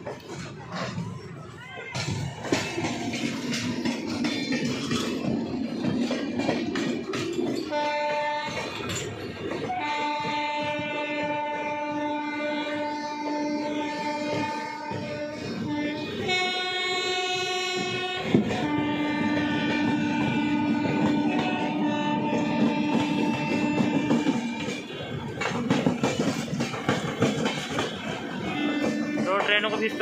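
Railway locomotive horn sounding in several long, steady blasts over the running noise of a train: one of about six seconds near the middle, a short blast at a different pitch straight after, another of about five seconds, and a further blast starting near the end.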